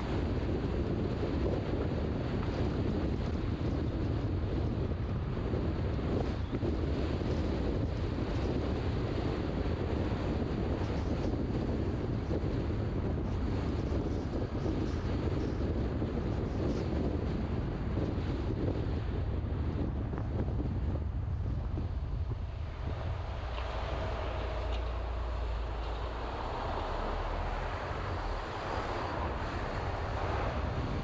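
Steady wind rushing over the microphone of a moving car, with low road and tyre rumble underneath. About two-thirds through the rumble thins and the noise turns lighter, and a faint high whistle comes and goes just before that.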